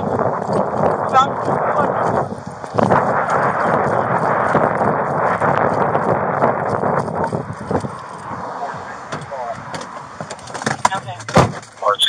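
Noise inside a moving police car: engine and road noise with garbled voices, likely radio traffic, and a couple of sharp knocks near the end.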